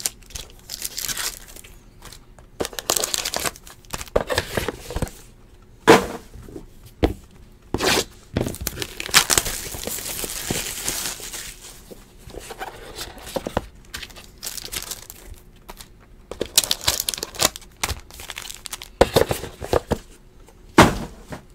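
Clear plastic shrink-wrap being torn off a trading-card box and crumpled, in irregular bursts of crinkling with one longer stretch of tearing about halfway through. Sharp clicks and knocks come from the cardboard box being handled.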